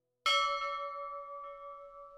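A struck bell chime marking the end of the timer's countdown. It sounds once, suddenly, about a quarter second in, and rings on with a slow waver as it fades.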